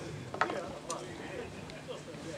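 A few sharp clicks and rattles over faint background voices.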